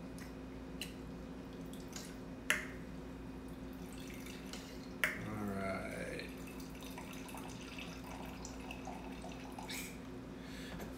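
White wine trickling and dribbling into a glass from a Coravin needle-through-cork pourer, with a few sharp clicks as the device is worked. The loudest run of pouring starts with a click about five seconds in and lasts about a second and a half.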